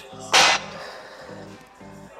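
Background music with steady, repeating low notes, and a single short hiss about a third of a second in.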